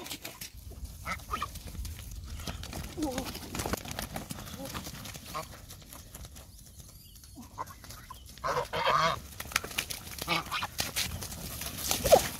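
Domestic geese honking as they are chased through grass, over quick rustling footsteps. There is a louder squawking call a few seconds before the end and a sharp honk with wing flapping at the very end as a goose is grabbed.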